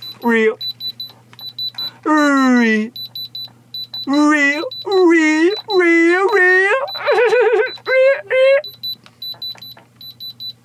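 Handheld electronic diamond tester beeping, short high-pitched beeps in quick repeated bursts as its probe is pressed to tooth grills and jewellery. A man's loud drawn-out 'ah' exclamations are the loudest sound over it.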